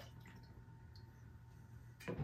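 Near silence: room tone with a faint drip of orange liqueur from a metal jigger into a glass mixing glass.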